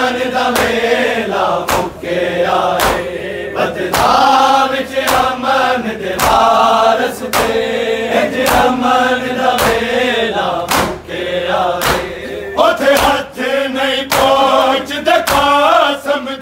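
A group of men chanting a noha lament in unison, with steady, regular slaps of palms on bare chests (matam) keeping the beat.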